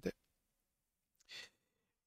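A short breath or sigh from a man, a brief airy puff about a second and a half in, in a pause between words; otherwise near silence.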